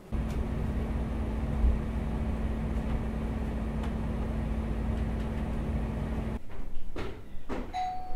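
A steady low drone with a constant hum runs for about six seconds and then cuts off suddenly. A few sharp clicks follow, and near the end a two-tone doorbell chime sounds, the higher note first and then a lower one.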